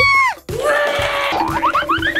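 A girl's high scream, held briefly and cut off within the first half second. It is followed by an added cartoon sound effect: a steady tone under a hiss, then, from a little past halfway, a fast run of rising whistles.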